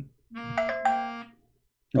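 A short electronic chime of two notes, lasting about a second.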